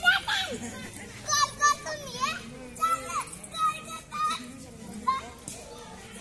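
Young children playing: high-pitched shouts and calls in short bursts, about one every second.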